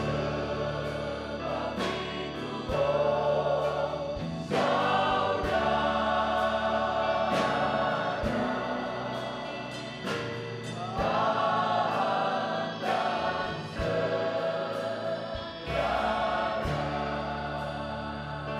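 Mixed choir of men and women singing a gospel worship song together with instrumental accompaniment, the sung phrases swelling and falling back every few seconds.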